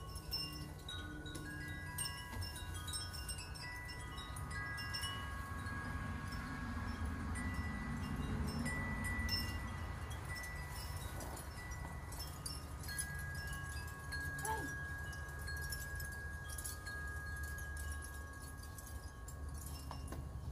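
Wind chimes ringing in the breeze: scattered clear tones that each hang on for a few seconds, over a low steady rumble.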